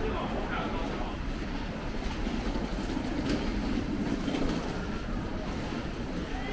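Steady low rumble of city background noise, with faint voices of passers-by.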